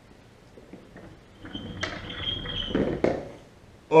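Handling noise of hand puppets and props being moved on a wooden table: faint clicks at first, then louder rustling and knocks from about halfway through, with a sharp knock about three seconds in.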